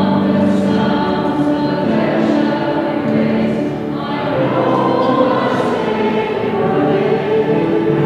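Choir singing a hymn, with long held notes.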